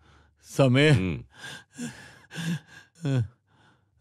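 A man's voice in short bursts of film dialogue, with a long sound whose pitch wavers up and down about half a second in, like a sigh or groan, then a few brief phrases.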